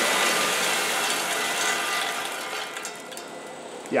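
Caramel corn pouring off the RoboSugar 20's cooling conveyor down a stainless steel chute into a collection bin: a loud, dense rush of falling pieces, too loud to talk over, that thins and dies away about three seconds in.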